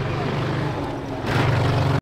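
Folkrace car's engine running under power on a dirt track as the car comes toward the listener. It gets louder about a second and a quarter in, with more hiss and rush mixed in.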